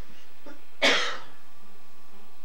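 A person coughs once, a short sharp burst a little under a second in.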